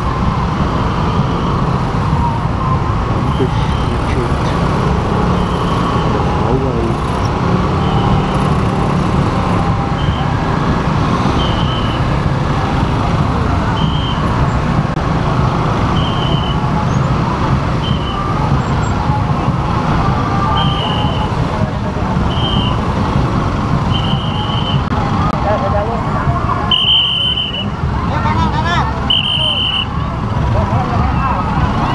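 Motorcycle engine running at low speed in slow, dense traffic, with the noise of other motorcycles and cars around it. Short high beeps recur every one to two seconds throughout.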